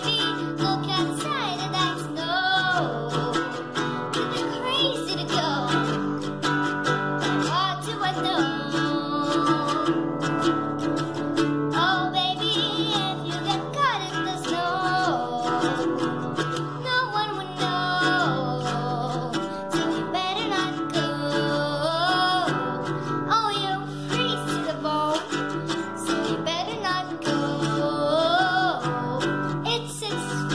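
A girl strumming chords on a nylon-string classical guitar while she sings.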